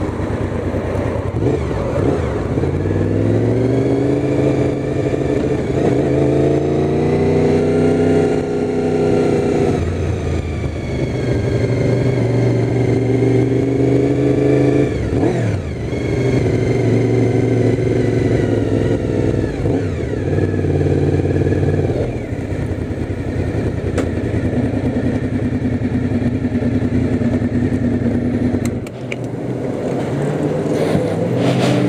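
Motorcycle engine pulling away and accelerating, with its pitch rising through the revs. It holds a steady cruise, eases off twice, and runs at lower revs near the end as it slows to a stop.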